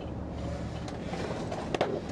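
Steady low rumble inside a police car, its engine running, with a sharp click near the end.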